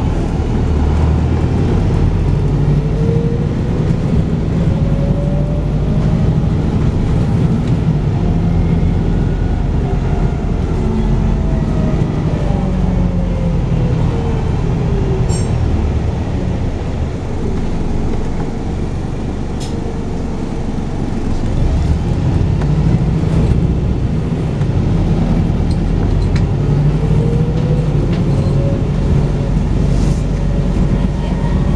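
Volvo B5TL double-decker bus heard from inside the saloon while under way: a steady low diesel engine drone with a drivetrain whine that rises and falls in pitch several times as the bus speeds up and eases off, dipping a little about two-thirds of the way through. A couple of short sharp clicks from the bus body.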